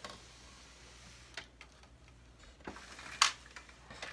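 Scattered light knocks and clicks from a wooden Nishijin Model A pachinko machine cabinet being turned around by hand on a table, the loudest knock about three seconds in.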